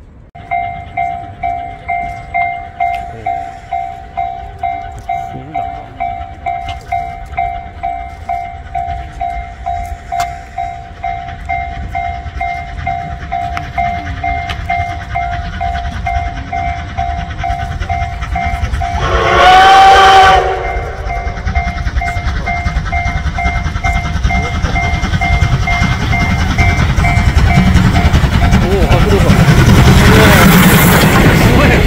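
Level-crossing warning bell beeping in an even two-tone pulse, about two a second, as the C10 8 steam locomotive approaches. About 19 seconds in, the locomotive's steam whistle sounds once for about a second and a half, a chord of several tones, and its rumble grows louder toward the end.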